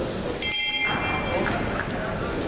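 A boxing ring bell struck once about half a second in, a bright ringing tone that fades within about a second, over chatter in the hall.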